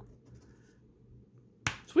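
Quiet room tone, then about one and a half seconds in a single sharp click, a metal scratching coin being set down on the table.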